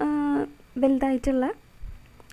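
Only speech: the lecturer's voice, one drawn-out syllable followed by two short words, then a brief pause.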